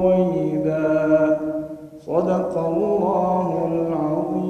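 A man reciting the Quran in a melodic, drawn-out chant, holding long notes. He breaks off for a breath about two seconds in and then resumes.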